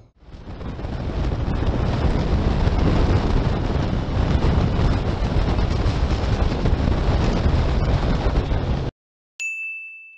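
Wind rush and engine noise of a motorcycle riding along, as picked up by a camera mounted on the bike, heaviest in the low rumble; it cuts off abruptly near the end. About half a second later comes a single high ding that rings and fades.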